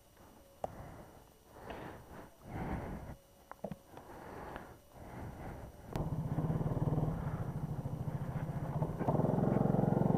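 Go-kart engine running steadily as the kart pulls away, starting about six seconds in and getting a little louder near the end. Before that there are only faint scattered sounds of the track hall.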